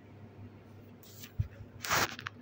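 Quiet handling of a plastic toy playset: a single soft knock about a second and a half in, and a short scrape or rub of plastic just before the end.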